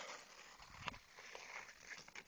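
Faint scraping of ice skates and a few light clicks of a hockey stick on a puck as a skater stickhandles on an outdoor rink.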